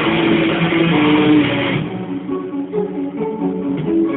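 Electric guitars playing a melodic death metal song. The dense, full playing drops away a little under two seconds in, leaving a quieter line of separate picked notes.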